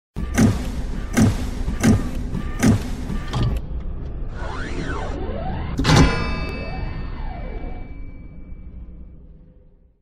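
Sound effects of an animated logo intro: four heavy hits about three-quarters of a second apart, then a whirring sweep that rises and falls in pitch, then a final big impact about six seconds in whose ringing tone fades away over the following few seconds.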